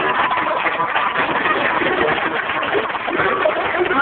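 Stunt cars' engines idling steadily, with faint voices in the background.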